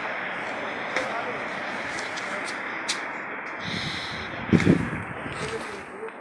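Steady city street noise picked up on a phone microphone, with a few light clicks from the phone being handled and a brief voice about four and a half seconds in.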